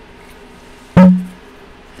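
A microphone being knocked: one sudden, very loud thump about a second in, with a short low ring that dies away within half a second.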